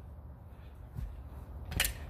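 Backsword blades meeting once near the end, a sharp clack, preceded about a second in by a softer knock.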